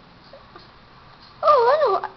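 A household pet's high, wavering whine, starting about one and a half seconds in and rising and falling in pitch, loud against an otherwise quiet room.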